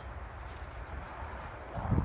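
Wind buffeting the microphone as a low rumble, under a steady rustling hiss outdoors.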